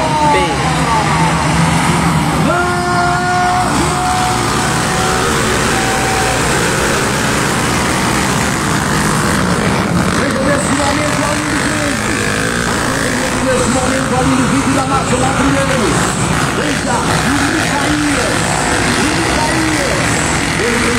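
A pack of trail motorcycles revving hard and accelerating away from a race start, their engine notes overlapping and rising and falling in pitch as the riders shift and run down the straight.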